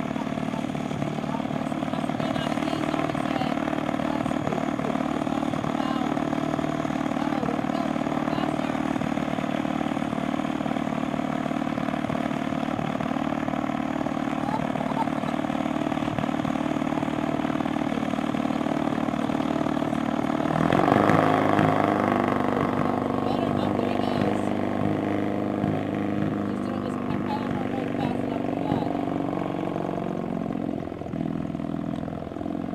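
Small engine of a single-seat gyrocopter idling steadily, then revving up and getting louder about two-thirds of the way through before settling back.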